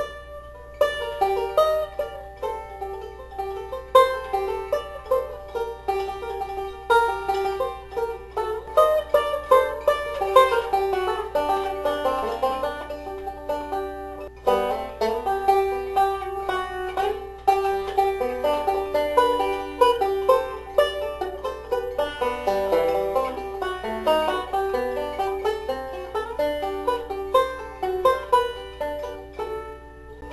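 Solo five-string banjo played in a classical style, a steady run of quick plucked notes. There is a brief pause just after the start and a short lull about halfway through.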